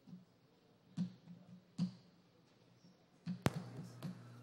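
Low steady electrical hum from the chamber's microphone system with a few faint knocks, then a sharp click near the end after which the background stays louder, as a microphone opens.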